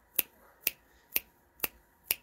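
Fingers snapping in a steady beat, four sharp snaps about half a second apart.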